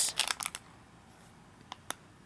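Plastic wrapper of a Kinder Delice snack cake crinkling as it is turned in the hands: a few quick crackles in the first half second, then quiet with two sharp clicks near the end.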